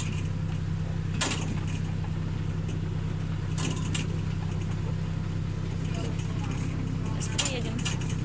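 Farm tractor engine running with a steady low drone, heard from the wagon it pulls, with a few short knocks about a second in, midway and near the end.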